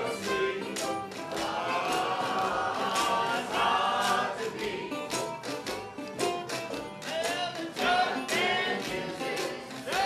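A jug band playing an instrumental break: a bending melody line over a steady rhythmic beat.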